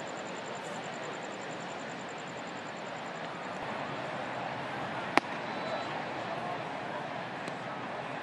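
Steady murmur of a ballpark crowd. About five seconds in there is a single sharp pop, a pitched ball smacking into the catcher's mitt for a ball.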